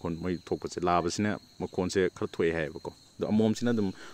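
A man speaking throughout, with a steady, high-pitched insect call running underneath.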